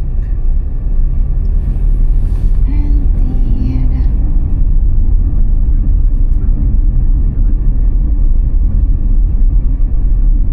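Car driving along a town street: a steady, loud low rumble of the moving car.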